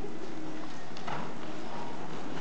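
Muffled hoofbeats of a paint horse moving under saddle on soft arena dirt.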